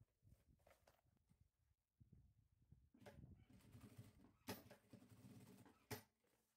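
Near silence, with faint rustling and handling of a synthetic-leather zippered pouch from about three seconds in, and two soft knocks.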